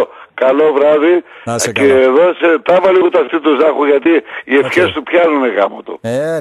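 Speech only: a radio host talking in Greek, with short pauses.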